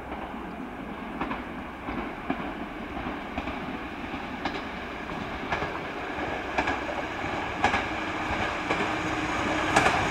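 A single-car KTR700-series diesel railcar approaching, its wheels clicking over rail joints about once a second and its rumble growing steadily louder as it nears. A steady hum from the car joins in near the end.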